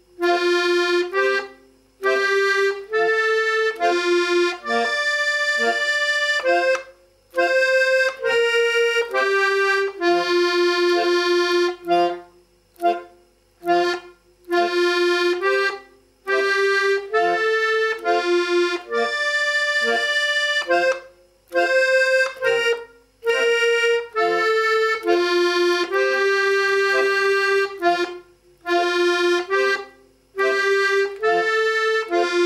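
Small piano accordion playing a simple dance melody in F slowly, note by note on the right-hand keys, with the left-hand bass buttons sounding lower notes under it. The notes are detached, with short breaks between them.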